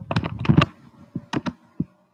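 Typing on a computer keyboard: a quick run of keystrokes, then a few separate key presses.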